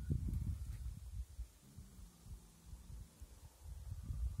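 Low, irregular rumbling thumps on the microphone, with a faint steady low hum through the middle.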